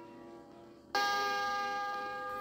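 Read-along record's page-turn chime: a single bell-like chime struck about a second in, ringing on with several clear tones, the signal to turn the page.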